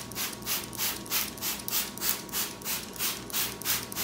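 Trigger spray bottle squeezed rapidly, about four short hissing sprays a second, misting water onto potting soil to moisten the seeds.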